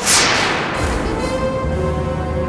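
A sudden whip-crack-like dramatic sound-effect sting hits at the start, sweeping downward and fading within a second. Background score follows with held notes over a low drone.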